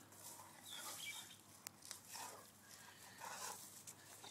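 Faint sniffing and breathing of a young bullmastiff with its nose to the ground, in soft puffs, with a single light click about one and a half seconds in.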